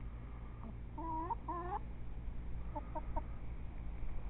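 Domestic hens clucking: two drawn-out, wavering calls about a second in, then three short clucks in quick succession near the three-second mark, over a steady low hum.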